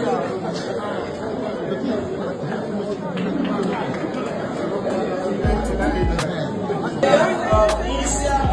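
Crowd chatter with music underneath, and a deep low tone sounding twice: briefly about five and a half seconds in, then again near the end.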